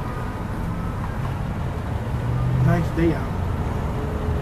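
Steady low rumble of road traffic, with a brief voice sound about three quarters of the way in.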